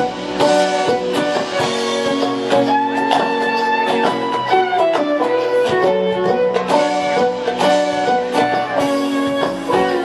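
Live string band playing the opening bars of a song without vocals: plucked banjo and acoustic guitar lead a quick picked figure over a drum kit.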